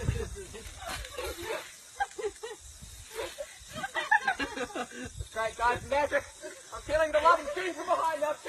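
Indistinct voices of people talking, without clear words.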